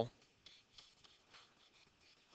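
A stylus writing on a digital screen: a few short, faint scratches as handwriting is put down.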